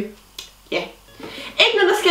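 A woman's voice making short, wordless vocal sounds, with a single sharp click about half a second in.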